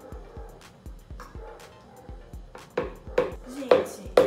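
A silicone spatula and plastic cup scraping soft butter into a plastic mixing bowl, ending in three sharp knocks about half a second apart as the butter is knocked off, over background music with a steady beat.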